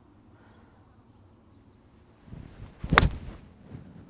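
A golf swing off fairway turf: a short whoosh of the club building about two and a half seconds in, then one sharp crack of the clubface striking the ball about three seconds in. The golfer judges the shot a quick, ugly swing and a miss.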